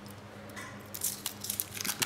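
Aluminium foil crinkling and tearing as it is peeled by hand off a cast tin block, in scattered crackles that grow busier about halfway through.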